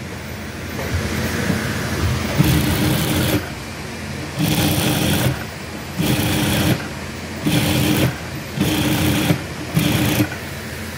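Industrial single-needle lockstitch sewing machine stitching two fabrics together through a fabric joint folder. It makes one longer run about a second in, then several short bursts, with a steady low hum between them.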